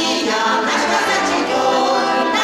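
Folk vocal group singing a Russian folk song in chorus, many voices in harmony, with accordion accompaniment.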